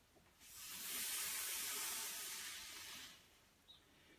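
A man's long, audible Pilates breath through the mouth: a steady hiss of air that starts about half a second in, holds for nearly three seconds and fades away.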